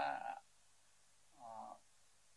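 A person's voice: the end of a spoken phrase in the first half-second, then one brief, short voiced sound about one and a half seconds in.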